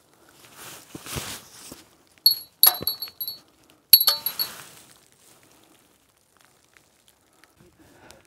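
A small metal bell hanging on a string, flicked with a finger: it rings in three short jingles about two, two and a half, and four seconds in, each a quick run of high clinks.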